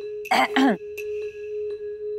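Someone clearing their throat twice in quick succession, with falling pitch, in the first second. Under it, background music: one steady held note with a light ticking beat of about three ticks a second.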